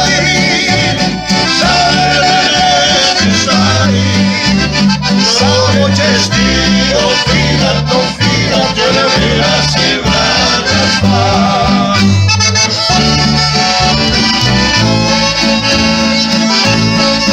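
Live acoustic folk music: a piano accordion, a strummed acoustic guitar and a plucked double bass play a song, with a man singing.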